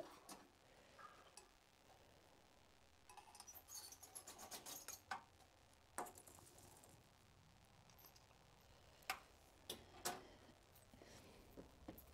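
Near silence with scattered faint clicks and light clinks, a quick flurry of them about three to five seconds in and a few single clicks later.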